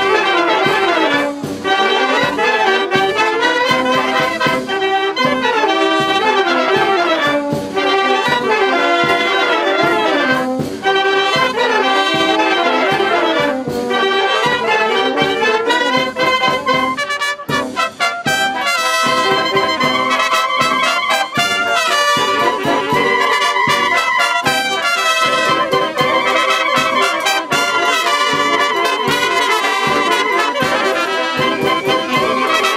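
A wind band of clarinets, flute, saxophones and brass playing a dance piece live. There is a brief dip a little past halfway, after which the band moves to longer held notes.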